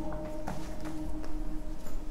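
Punching bag turning on its hanging chain and swivel, with only a few faint light clicks: the 'kat kat' clicking fault being demonstrated does not show up. A steady hum runs underneath.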